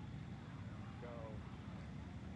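Low, steady outdoor background rumble, with a single spoken "Go" about a second in.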